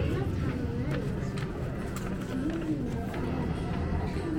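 Indistinct voices over a steady low rumble, with a few faint clicks.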